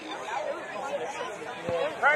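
Several voices of players and spectators talking and calling over one another at the rugby field, with a brief thump near the end.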